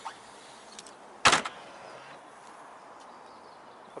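Boot lid of a BMW 325i (E93) hard-top convertible being shut, a single solid thud about a second in.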